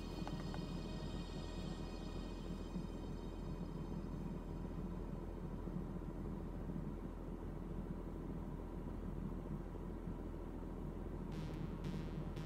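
Steady low hum of a car interior, with nothing else happening for most of the stretch. Near the end a soft beat of background music comes in.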